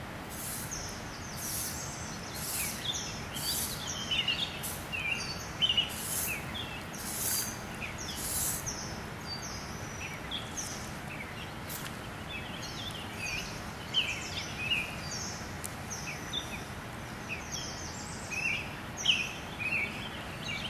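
Songbirds chirping again and again over the steady rush of flowing stream water.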